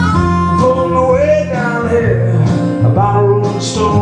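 Live acoustic blues: lap slide guitar playing notes that glide from pitch to pitch over a steady bass, with a harmonica playing along.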